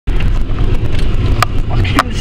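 Four-wheel-drive vehicle heard from inside the cabin on a rough dirt track: a loud, uneven low rumble of engine and jolting, with one sharp knock about one and a half seconds in.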